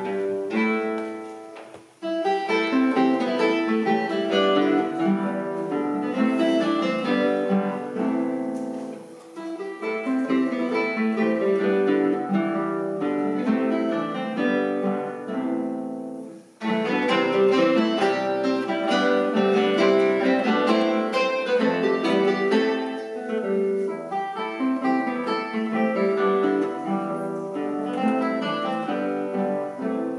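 A quartet of classical guitars playing an arrangement of Irish harp tunes together, plucked melody over chords. The music pauses briefly about 2 s in and again at about 16 s, then starts up again.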